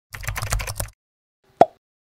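Animated-intro sound effects: a quick run of computer-keyboard typing clicks lasting just under a second, then silence and a single short, sharp plop about a second and a half in.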